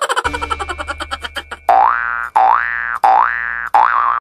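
Edited-in comic sound effect: a rapid run of ticks over a low hum, then four quick rising tones in a row, each about half a second long.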